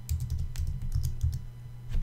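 Computer keyboard being typed on: a quick run of keystroke clicks for a bit over a second, a short pause, then one more keystroke near the end.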